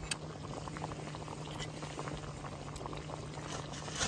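Spicy chicken stew simmering in an aluminium mess tin on a gas camping stove: a dense patter of small bubbling pops over a low, steady hum.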